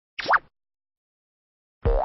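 Two short cartoon sound effects, each a quick upward-gliding 'bloop', one about a quarter second in and one near the end, with silence between.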